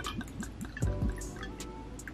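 Tequila poured from a glass bottle into a shot glass, trickling and dripping, over background music.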